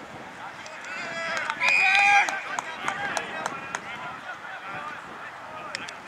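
Players and spectators shouting across an Australian rules football ground, with one loud drawn-out call about two seconds in.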